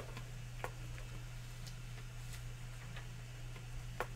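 A few faint, irregular plastic ticks from a squeeze bottle of silicone-mixed acrylic paint being pressed and dispensed into a plastic ice cube tray, over a steady low hum.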